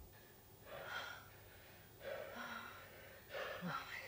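A woman panting: three faint breathy gasps about a second apart, the later ones with a little voice in them.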